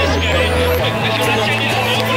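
Electronic backing music with a singing voice over a held bass note that steps to a new note about a second in, and a rising high sweep that ends around the same moment.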